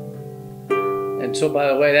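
Harp strings plucked by hand: the last notes of a phrase ring and fade, then a new chord is plucked about two-thirds of a second in and rings on under a man's voice near the end.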